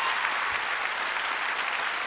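A large theatre audience applauding steadily, a dense and even sound of many hands clapping.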